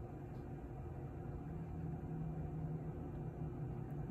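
Steady low machine hum with a few steady low tones running under it.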